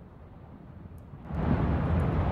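A faint low hum, then about one and a half seconds in a louder steady outdoor rumble cuts in: wind on the microphone and traffic noise from a street recording starting to play.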